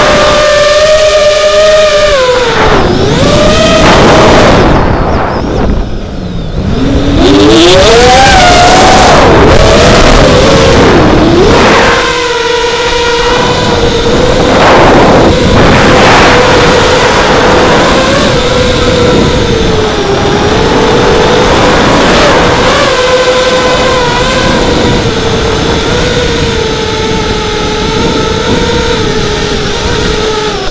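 FPV racing quadcopter's brushless motors (ZMX 2206, 2300KV, on a 4S battery) whining, heard from the onboard camera with propeller and wind noise. The pitch follows the throttle: it drops sharply and climbs back a few times in the first dozen seconds, deepest about six seconds in, then holds fairly steady with small wobbles.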